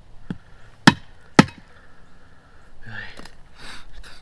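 A Cold Steel bowie knife chopping into a stick on a frozen wooden stump: two sharp chops about half a second apart, with a lighter tap just before. Softer noise follows near the end.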